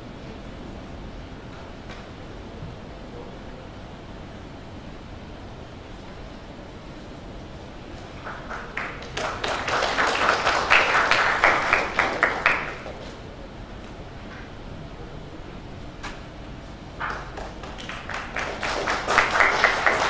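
Audience applauding in two bursts: the first starts about eight seconds in and lasts some four seconds, the second builds near the end. Between them only low room tone.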